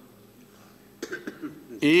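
Near quiet for about a second, then a man coughs briefly into the microphone, and his speech picks up again near the end.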